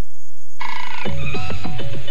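Short electronic TV bumper jingle: a gap of about half a second, a brief high tone, then a quick percussive beat with plucked-sounding notes begins about a second in.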